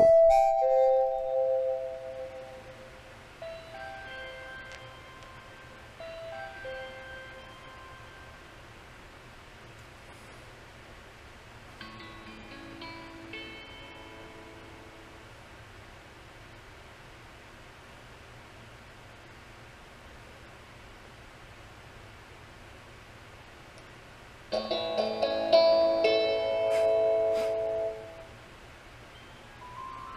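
Electronic doorbell ringtones from a smartphone's Ring app and a Ring Chime Pro plug-in chime, playing short melodic chime tunes. A loud chime dies away over the first two seconds, fainter short tunes follow a few seconds in and again around twelve seconds in, and a loud tune of about three seconds plays about 25 seconds in.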